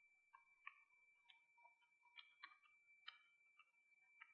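Faint, irregular clicks of keys being pressed on a handheld Casio calculator, about seven presses in a few seconds, as a calculation is keyed in.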